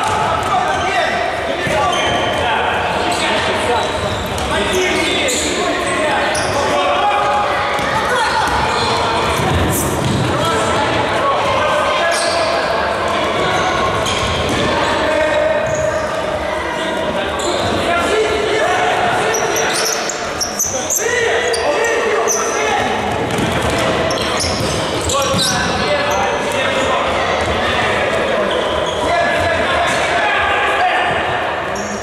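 Futsal ball kicked and bouncing on a wooden hall floor, with players and spectators calling out throughout; everything echoes in the large hall.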